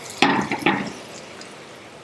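Carrot latkes frying in vegetable oil in a skillet: a steady sizzle, with two short louder bursts within the first second as a latke goes into the hot oil.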